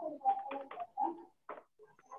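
A few low cooing calls in the first second or so, picked up over a video call, then a short click about one and a half seconds in.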